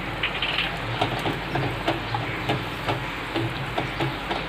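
Ground chilli-coconut masala paste sizzling in hot oil in an aluminium pot as it is fried down (bhuna), a steady hiss with a few soft ticks as a wooden spatula stirs it.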